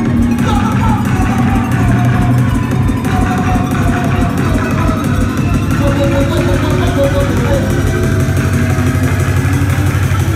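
Drum and bass DJ set played loud over a club sound system, with an MC's voice on the microphone over the music.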